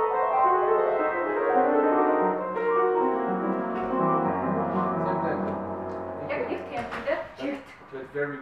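Piano playing a slow descending passage, its notes ringing over one another and sinking down to a long-held low bass note. A voice starts speaking near the end.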